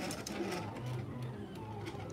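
Silhouette Cameo desktop vinyl cutter running a slow double-cut pass: a faint motor hum as the blade carriage moves across and the rollers shift the vinyl.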